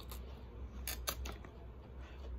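Faint mouth sounds of someone eating tacos: a few short, sharp smacking clicks, mostly about a second in, over a steady low hum.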